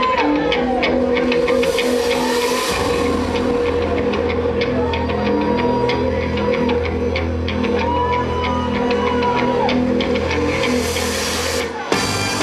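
Loud rock music in a club with a steady beat, a held tone and a repeating bending guitar-like figure; a low bass part comes in about three seconds in.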